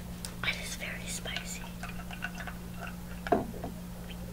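Soft whispered talking close to the microphone, then a single sharp click a little past three seconds in, over a steady low hum.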